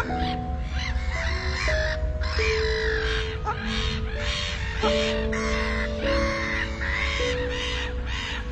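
Domestic geese honking over and over, about two calls a second, over slow, relaxing music of long held notes.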